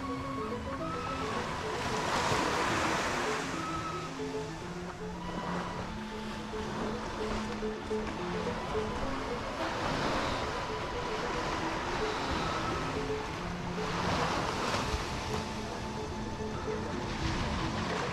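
Ocean surf breaking on a sandy beach, the wash swelling up every few seconds, under background music with a simple melody.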